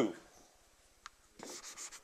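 Chalk writing on a blackboard: one sharp tap about a second in, then a quick run of short scratchy strokes in the second half.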